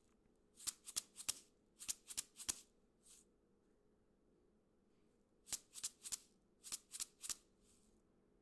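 Plastic spice jar of dry spices shaken as a homemade shaker, making short crisp rattles. It plays the rhythm apple, pear, apple, pear, about six shakes, twice over with a pause between.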